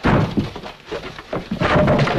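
Fight-scene scuffle: a heavy thud at the start, then scattered knocks, turning into a continuous noisy clatter about a second and a half in.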